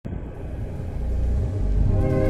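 A deep low rumble that slowly grows louder.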